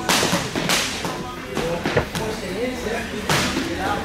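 Four sharp cracks or slaps at irregular intervals, echoing in a large room, over faint background voices.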